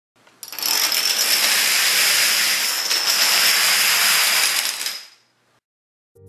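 Dense, continuous clatter of many plastic dominoes toppling in a chain, starting about half a second in and fading out shortly before the end.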